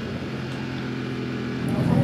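BMW F 900 R race bike's parallel-twin engine running at steady revs.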